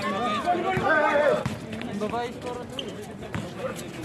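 Voices and laughter in the first second and a half. Then quieter sounds of an outdoor basketball game: players running on the court, with a few sharp knocks.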